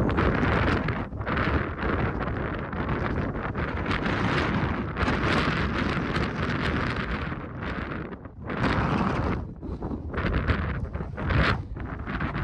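Strong, gusty wind buffeting the microphone, a rushing noise that swells and drops with a few brief lulls.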